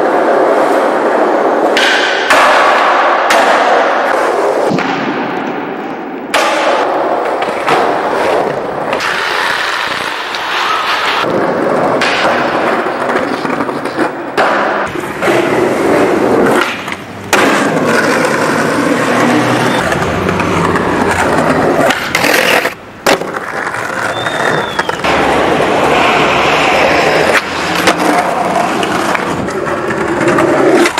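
Skateboarding: wheels rolling on concrete with sharp pops, grinds and board landings around stairs and steel handrails. The sound comes in short clips that cut abruptly from one to the next.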